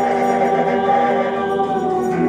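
Live ensemble music: several long held notes sounding together, with voices singing among them.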